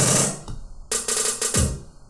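Layered EDM loop samples played back: drums with hi-hat and cymbal over a sustained layer, fading out about half a second in, then a second short run of drum hits that cuts off about a second and a half in.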